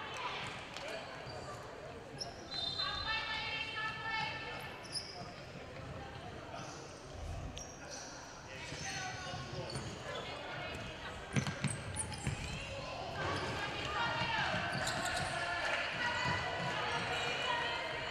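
Women futsal players calling out to each other on court in a large sports hall, with a few sharp kicks of the ball about eleven to twelve seconds in.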